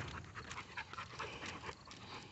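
A dog panting faintly in a quick run of short breaths while it walks on a leash.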